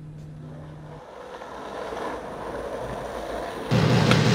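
Vehicle noise: a low hum for the first second, then a rumbling haze that swells for a couple of seconds, as of a passing train. Much louder sound, likely the soundtrack music, cuts in suddenly just before the end.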